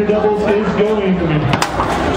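Talking voices throughout, with a single sharp crack about one and a half seconds in: a foosball struck hard by a player figure on the table during fast play.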